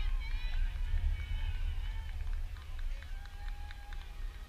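Wind rumbling on the microphone, with distant voices calling out, clearest in the first couple of seconds.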